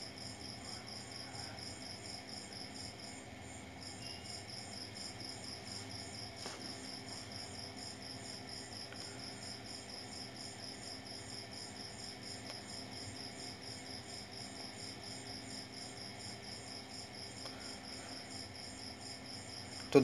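Quiet, continuous high-pitched chirping that pulses several times a second, like an insect trill, breaking off briefly about three seconds in, over a faint low hum.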